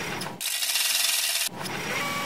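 An edited transition sound effect of grainy, scratchy noise, with a brighter hiss from about half a second to a second and a half in.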